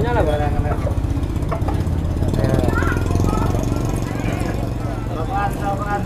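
A vehicle engine idling with a steady low throb, strongest in the first half and a little quieter later, under faint background talk.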